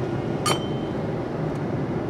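Steady drone of a Boeing 787's cabin in flight, with tableware clinking once on the meal tray about half a second in, ringing briefly.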